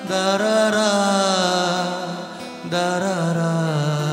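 Live song: a man's voice sings long held notes that slowly fall in pitch, over acoustic guitar. A new sung phrase begins just under three seconds in.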